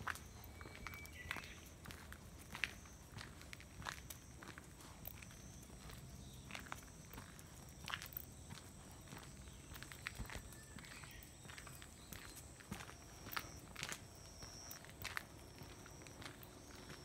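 Footsteps of a person and a dog walking on a paved path: a quiet, uneven run of light steps and small clicks.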